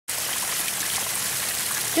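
Water from a pump-fed garden waterfall trickling and splashing steadily over rocks.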